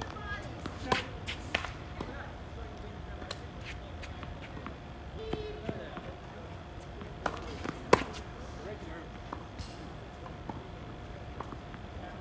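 Tennis balls struck by rackets and bouncing on a hard court: a few sharp, separate pops, two about a second in and two more around eight seconds in, the last one the loudest.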